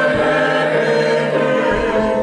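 Small mixed choir of men and women singing a hymn from hymnals, holding long sustained notes.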